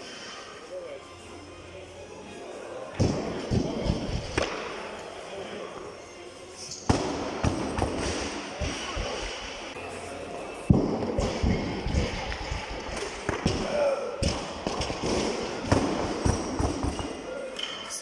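Heavy barbell work with a loaded Eleiko bar and bumper plates: several thuds and bangs of weights, the loudest a single sharp bang about ten and a half seconds in, as the bar is set back onto steel jerk blocks, with voices in the hall behind.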